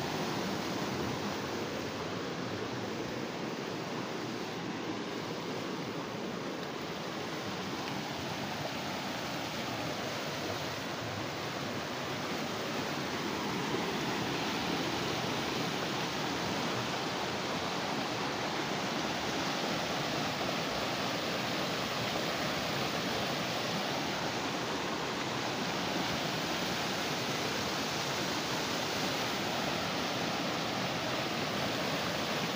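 Rocky river rushing over stones and through white-water rapids: a steady hiss of running water that grows a little louder about halfway through.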